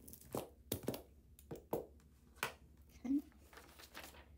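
A sheet of paper being handled over a rubber stamp: a rubber brayer rolled across it and put down, then the paper rustling as it is lifted off. There are a handful of sharp clicks and taps in the first two and a half seconds.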